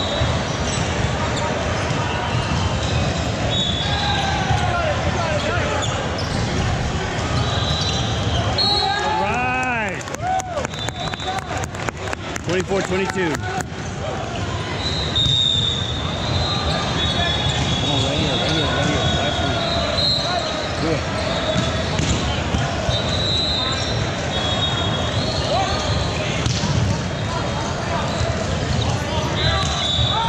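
Busy gymnasium din: many voices of players and spectators, sneaker squeaks on the hardwood court, and volleyballs bouncing and being hit. A run of quick sharp knocks comes from about 10 to 14 seconds in.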